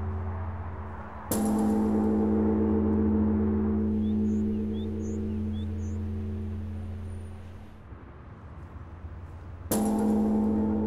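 Large bronze Japanese temple bell (bonshō) struck twice by its swinging wooden log, about eight seconds apart, each strike a sudden deep clang followed by a long low humming ring that slowly fades.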